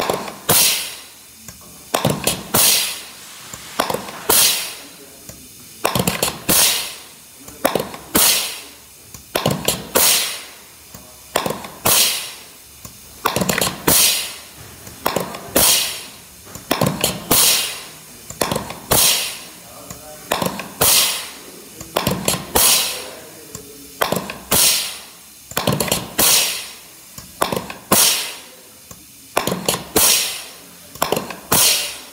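ZF gearbox shift tower cycling through shifts on a test bench: each shift gives a sharp clack followed by a hiss that fades within a second, repeating about once a second.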